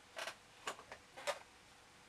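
A paintbrush working watercolour paint, making three short, faint scratchy strokes about half a second apart.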